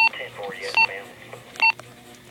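Motorola HT1250 handheld radio keypad tones: three short, identical beeps, each one key press, spaced a little under a second apart.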